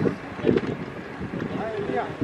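Indistinct voices talking, with wind buffeting the microphone.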